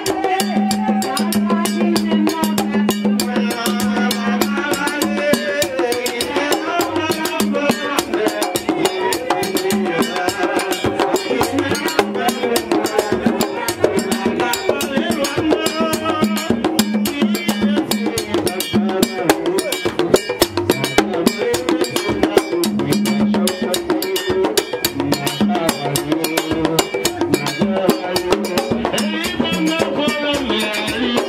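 Vodou ceremonial music: drums keep up a steady, driving rhythm while a man sings through a microphone over them.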